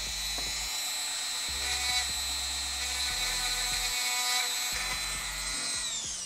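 Handheld rotary tool running at a steady high-pitched whine while trimming a plastic drone canopy, with slight changes in load as it cuts. At the very end it is switched off and the whine falls in pitch as the motor spins down.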